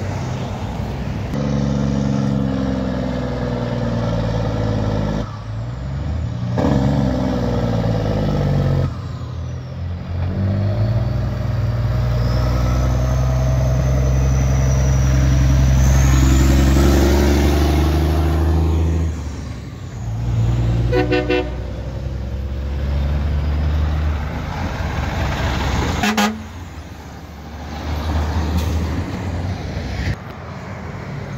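Traffic passing close through a roundabout: a car, then a Peterbilt semi truck's diesel engine pulling past, loudest a little after the middle. There is a short toot about two-thirds of the way through.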